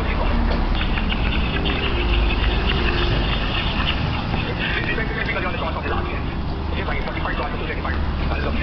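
Street ambience picked up while walking along a city sidewalk: a steady low rumble with indistinct voices and traffic.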